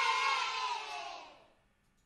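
The closing held note of a children's dance song, with cartoon voices cheering, fading out about a second and a half in.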